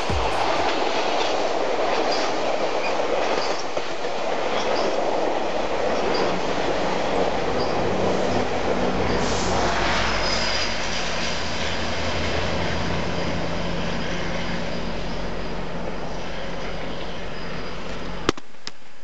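GO Transit bilevel commuter train passing close below, its wheels rumbling and clicking over the rail joints. From about the middle, the MP40PH-3C diesel-electric locomotive pushing at the rear adds a steady low engine drone, with a faint high wheel squeal, and the drone carries on as the train pulls away.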